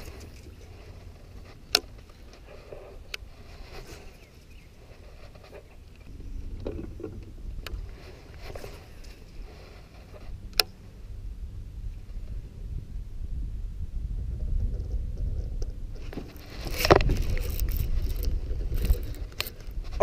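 Low rumbling handling and wind noise on a head-mounted camera, broken by a few sharp clicks from the baitcasting reel and rod. In the last four seconds the noise grows louder and busier as a bass is hooked under a dock.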